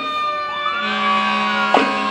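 An emergency-vehicle siren winding up, rising in pitch about half a second in and then slowly falling, over a marching band: a held low note and a sharp drum hit near the end.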